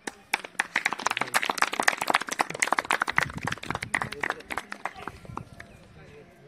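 A small group of people clapping their hands in a dense round of applause that thins to a few scattered claps and dies out near the end.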